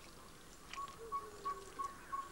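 Wild birds calling: a monotonous series of short piping notes on one pitch, about three a second, picking up just under a second in, with a lower drawn-out note beneath it and a few brief higher chirps.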